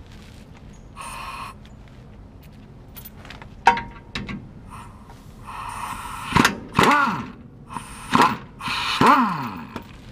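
Air impact wrench on a shock absorber bolt, run in several short bursts in the second half, each whine rising and then falling away as the tool spins up and stops.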